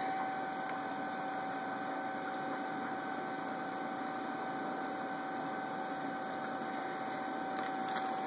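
Steady mechanical hum of running aquarium equipment, with a steady high-pitched whine over it.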